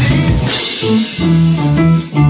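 Live band playing, guitar to the fore over a drum kit.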